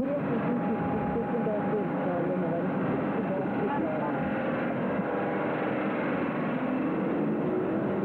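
A dense, steady din of many overlapping voices, with no single speaker standing out.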